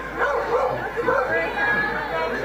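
A dog barking and yipping over the chatter of a crowd of spectators.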